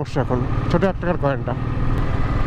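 Royal Enfield single-cylinder motorcycle engine running steadily while riding, with a low, even beat; a voice speaks over it during the first second and a half.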